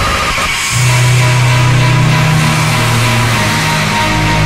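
Speedcore electronic music at 390 BPM: a dense, noisy wall of sound, with a loud, steady bass tone coming in just under a second in and holding.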